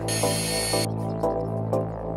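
Background electronic music with sustained low notes and a repeating melody. A short burst of hiss sounds about a tenth of a second in and lasts under a second.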